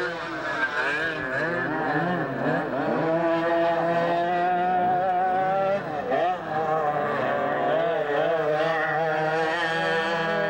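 Several racing go-kart engines running together, their pitch rising and falling over and over as the karts accelerate and back off. There is a brief dip in level about six seconds in.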